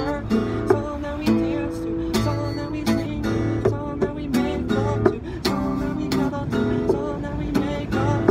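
Steel-string acoustic guitar strummed in a steady rhythm, with a man singing along.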